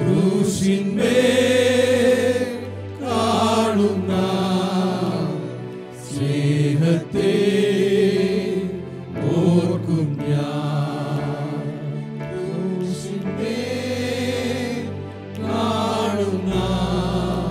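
Group of male voices singing a slow Malayalam Christian hymn together, accompanied by keyboards with sustained low notes. The sung lines come in phrases of a few seconds each, with short breaths between them.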